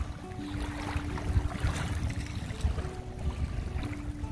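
Wind rumbling on the microphone, with faint music of thin, held notes stepping from one pitch to another.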